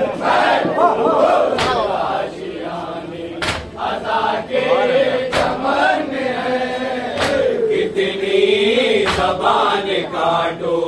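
Male voices chanting a salaam (Urdu devotional verse) in a wavering, drawn-out melody, a lead reciter on a microphone with the crowd. A sharp slap comes about every two seconds: men beating their chests with raised hands in matam, in time with the chant.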